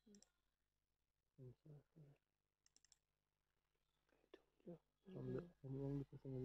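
Quiet, low-voiced talk in short stretches, with a brief run of faint clicks about three seconds in.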